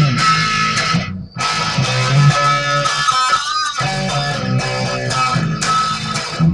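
Electric guitar strummed in an instrumental passage of the song, with no voice. The chords stop briefly about a second in and again just past three and a half seconds.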